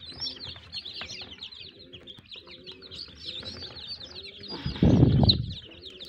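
A crowd of young chicks in a brooder peeping constantly, many short high cheeps overlapping. About five seconds in there is a loud low rustle lasting under a second.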